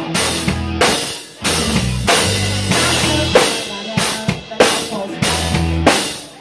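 Rock drum kit played live, heard from the drummer's seat: kick, snare and crashing cymbals hit in a steady beat over the band's low bass notes.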